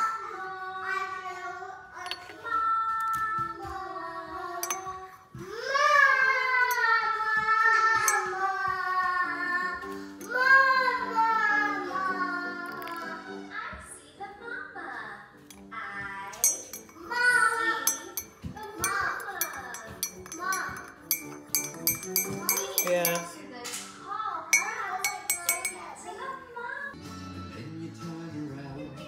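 A young child's high voice, singing and chattering with held, gliding notes.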